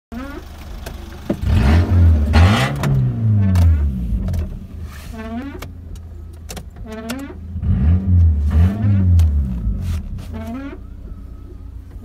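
Car engine idling, heard from inside the cabin, and revved twice. Each rev climbs and falls back to idle over about two seconds, the first a little after a second in and the second near the middle.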